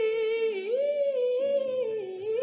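A female singer's soft voice holding one long sung note that wavers and dips slightly in pitch, with little or no accompaniment.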